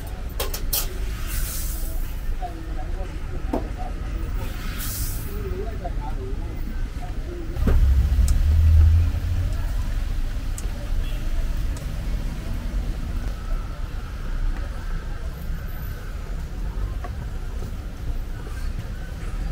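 Street ambience: a steady low traffic rumble that swells for about a second and a half around eight seconds in, with two brief hisses in the first five seconds and faint voices in the background.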